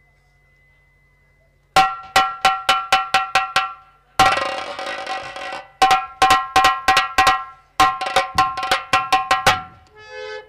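Ringing metallic percussion from the drama's accompanying band, struck fast at about four strokes a second in runs. It starts suddenly about two seconds in after a near-quiet start, and a longer crash-like ringing wash comes about four seconds in.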